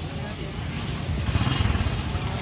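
Low rumble of a vehicle engine going by, swelling in the second half, under faint background voices.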